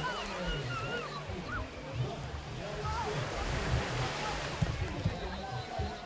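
Beach ambience: indistinct voices and calls of people near the shore over the steady wash of small surf, with a swell of surf noise about midway.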